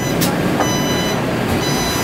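Electronic warning beeps on a Taipei Metro train standing at a platform with its doors open, typical of the door-warning signal: two half-second high tones about a second apart, over the train's steady hum and passengers' movement.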